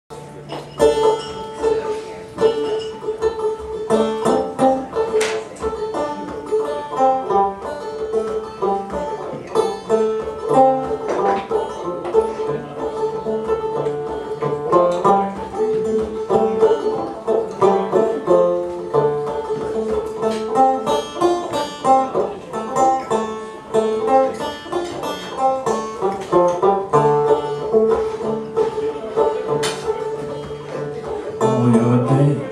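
A banjo played solo, with a steady stream of picked notes over one high note that rings on underneath.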